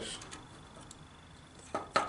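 Two light metallic clicks close together near the end, from a small hand saw's blade and frame being handled as the blade is refitted through a drilled plastic case top.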